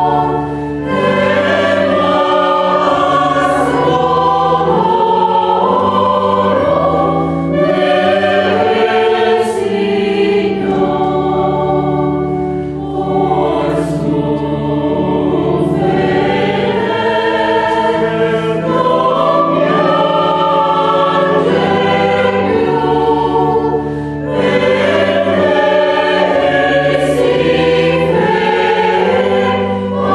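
Mixed choir of sopranos, altos, tenors and basses singing a Christmas carol in sustained chords, with a few short breaks between phrases.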